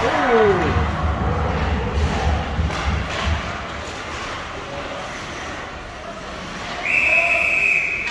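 Ice hockey referee's whistle: one steady, high blast about a second long near the end, stopping play. Before it, low thumps and rink noise.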